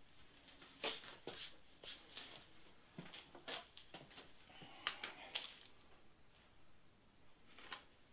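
Light, scattered knocks and clicks of tools being handled on the top of a cedar stump, with a last knock near the end as a bullet level is set down on the wood.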